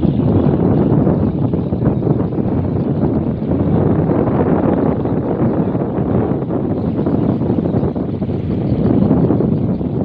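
The engine of a small wooden river boat running steadily under way, mixed with wind noise on the microphone.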